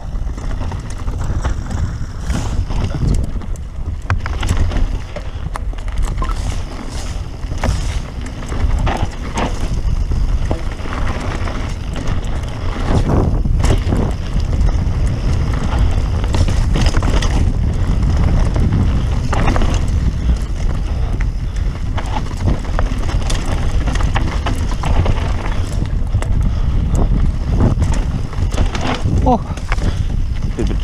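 Mountain bike ridden fast down a rocky dirt trail: wind buffeting the camera microphone as a heavy steady rumble, with tyres crunching over dirt and stones and the bike knocking and rattling over bumps.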